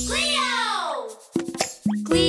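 Cartoon sound effect: a long sliding fall in pitch of about a second over the children's-song backing music, then the music drops out and a few quick plops follow.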